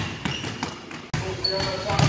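Basketballs dribbled on a hardwood gym floor, several balls bouncing in quick, uneven succession, with voices in the hall.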